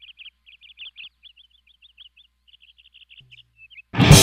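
Songbird chirping in quick runs of short high notes over a faint low hum. A heavy metal band with distorted guitars and drums comes in loudly right at the end.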